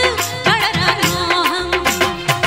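Bollywood-style Hindi film song with a steady beat of about four strokes a second, a woman singing the gliding melody into a microphone over the backing music.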